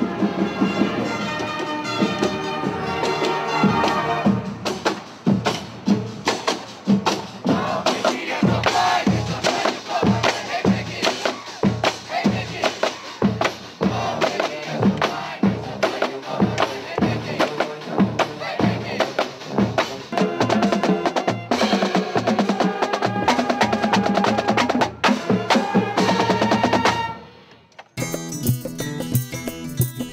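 Marching band playing: brass over a steady beat of snare and bass drums. It stops abruptly near the end, and a different piece of music with strummed guitar takes over.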